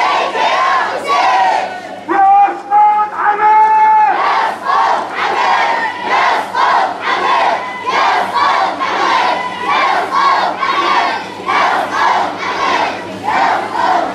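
Crowd of marchers chanting in Arabic: a lead voice holds long notes for the first few seconds, then the crowd chants in unison in a steady rhythm of about two syllables a second.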